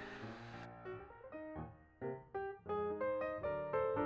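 Background music on a piano-like keyboard: separate notes and small chords struck a few times a second, with a short gap of near quiet about two seconds in.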